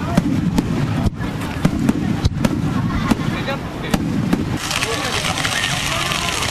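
Aerial fireworks in a rapid barrage: repeated sharp bangs and crackles over a low rumble of bursts. About four and a half seconds in, a steady fizzing hiss sets in as a set-piece firework starts to burn.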